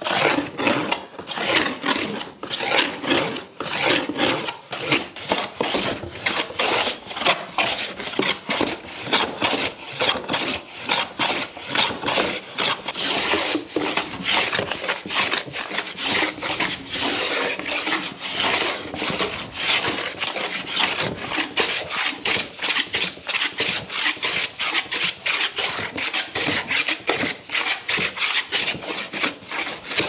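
Metal hand plane shaving a walnut panel flat in quick, evenly repeated strokes, each a short rasping swipe of the blade across the wood, a couple of strokes a second.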